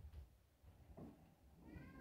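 Faint room tone with one short, high meow near the end, the call of a cat.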